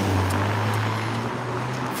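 A vehicle engine running close by with a steady low hum over street traffic noise; the hum stops near the end.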